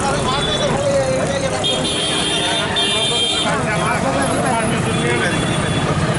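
Several people talking over street traffic, with a high-pitched vehicle horn sounding twice about two seconds in: a held blast of about a second, then a shorter one.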